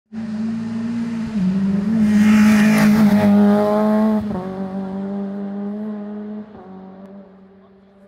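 Rally car passing at speed, its engine loudest about two to four seconds in, then dropping in pitch and fading as it drives away.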